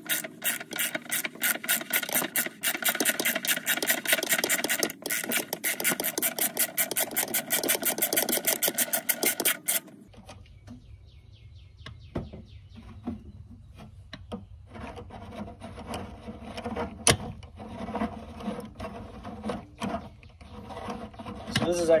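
Hand ratchet clicking rapidly and evenly as it spins a socket to unscrew a loosened magnesium anode rod from a water heater. About ten seconds in the clicking stops, leaving faint rubbing and a few scattered clicks.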